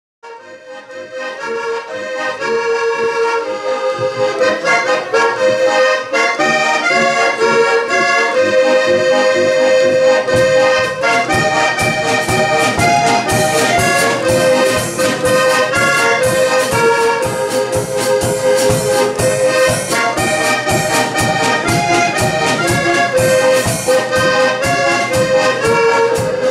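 Heligonka, a diatonic button accordion, playing a tune. A steady beat comes in about ten seconds in.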